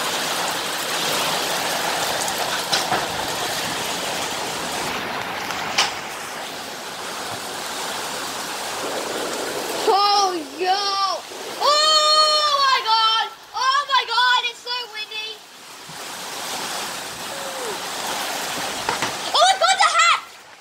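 Heavy rain pouring down and splashing steadily. A high-pitched voice calls out several times in the middle, for about five seconds.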